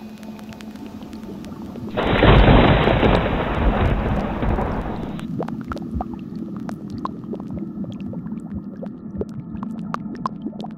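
A loud thunderclap with a deep rumble breaks in suddenly about two seconds in and dies away over about three seconds. A low steady hum with scattered faint crackles and clicks follows.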